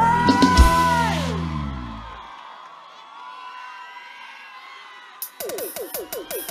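A live band and singer end a song on a long held sung note that bends down and dies away about two seconds in, leaving a concert crowd cheering and whooping faintly. Near the end the band starts the next tune with quick repeated notes.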